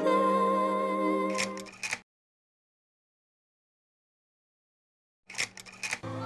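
A woman's long sung note over a soft backing, fading out within the first second and a half, followed by a few faint clicks. Then about three seconds of complete silence, broken near the end by brief clicks and noise.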